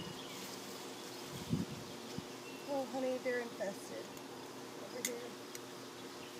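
Quiet outdoor background with a few faint murmured words around the middle and a couple of light taps.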